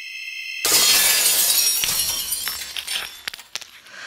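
A high ringing tone swells and is cut off by a pane of glass shattering about half a second in. Shards tinkle and scatter, fading away over the next few seconds.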